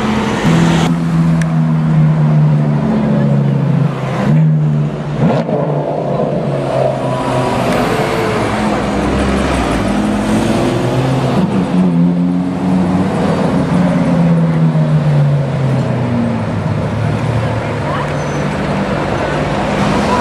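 Sports car engines running and revving: a low engine tone holds and rises and falls over several seconds at a time. Through the second half this is a Lamborghini Gallardo's V10 driving off.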